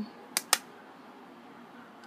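Two quick, sharp clicks about half a second in, a moment apart, as plastic makeup cases are handled; then only faint room hiss.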